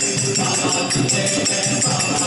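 A group of people singing a devotional song together, with jingling percussion keeping a steady beat.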